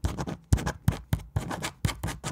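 Pen writing on paper: quick, irregular scratching strokes, several a second.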